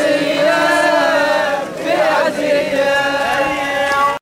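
Male voices chanting a Shia mourning lament (latmiya) in long, drawn-out held notes, with a short break partway through.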